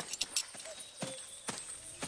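Horses walking, a handful of irregular hoof clops.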